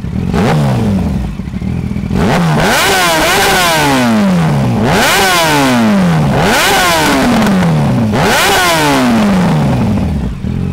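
Yamaha FZ1's inline-four engine through a LeoVince SBK exhaust, revved hard on the standing bike. A few short blips come first, then from about two seconds in, five or so big revs, each climbing quickly and falling slowly back toward idle.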